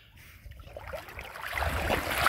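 A dog swimming and then wading into shallow water, with water sloshing and splashing that grows louder toward the end as it reaches the shallows.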